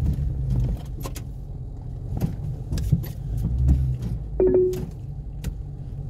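Steady low rumble of a car cabin on the move, with scattered light clicks and rattles and one brief short tone about four and a half seconds in.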